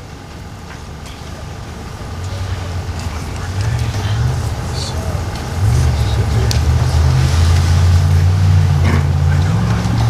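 A motor vehicle's engine running close by, growing steadily louder, with a few step changes in engine pitch.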